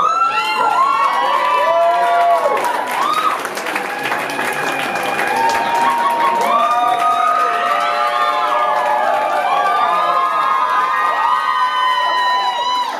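Small audience cheering and whooping, with clapping: many voices hold long, high calls that overlap throughout.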